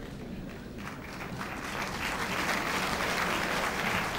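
Audience applauding, the clapping swelling over the first two seconds and then holding steady.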